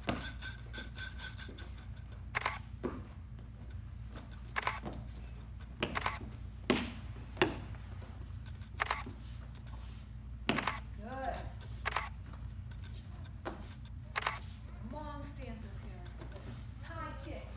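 Sharp snaps and slaps from a karate form's punches, kicks and stances, about a dozen irregularly spaced strikes, over a steady low hum of the room.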